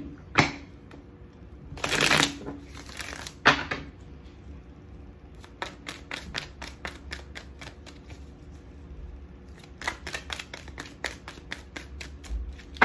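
A deck of tarot cards being shuffled by hand, packets of cards slid and dropped onto one another. There is a louder rushing riffle about two seconds in, and later quick runs of flicking card clicks.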